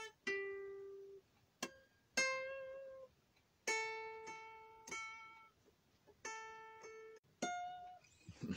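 A guitar picked one note at a time in a slow blues line: about nine single notes, each ringing out and fading before the next, with short silent gaps between them. Most notes sit near the same pitch, and the last one is higher.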